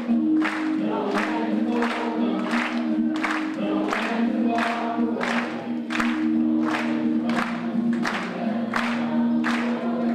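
Acoustic guitar strummed in a steady beat of about two strokes a second, with singing in long held notes over it.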